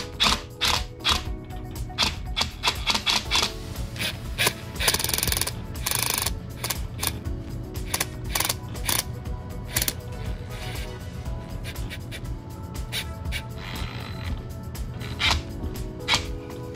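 Cordless impact driver hammering a steel stud into a rubber tire tread in short bursts, over background music with a steady beat.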